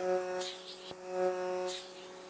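Vacuum therapy (cupping) machine's pump running with a steady electric hum, swelling slightly about halfway through, while the suction cup is drawn over the skin of the neck.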